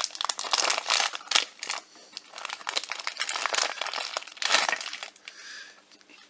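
Plastic blind-box pouch crinkling and crackling as hands tear it open, in quick irregular rustles with a brief lull about two seconds in.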